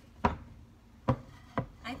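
A thick end-grain wooden cutting board knocking down on the hard surface beneath it as it is shifted, three sharp wooden knocks, the last one softer.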